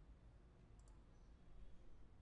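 Near silence with low room hum, and a faint computer-mouse click a little under a second in.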